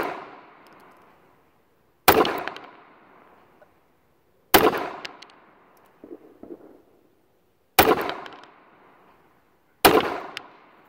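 Bersa Thunder .380 ACP pistol being fired in slow, deliberate single shots: four sharp reports roughly two to three seconds apart, each trailing off in an echo. The echo of a shot fired just before is still fading at the start.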